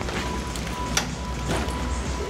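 Low, steady rumble of a van's engine idling, with a sharp knock about a second in and a lighter one soon after as someone climbs out of the van's side door, over faint background music.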